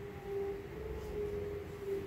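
A steady mid-pitched hum, holding one pitch, over a low background rumble.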